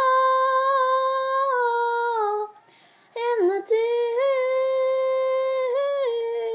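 A girl singing unaccompanied, holding a long steady note, pausing briefly for breath about two and a half seconds in, then holding a second long note.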